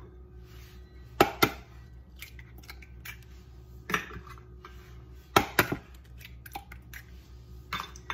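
Eggs being cracked against the rim of a plastic mixing bowl: several sharp knocks, some in quick pairs.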